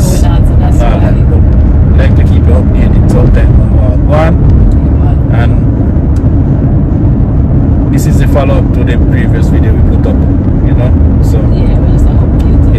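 Steady low rumble of a car on the move, heard from inside the cabin, with bits of talking over it.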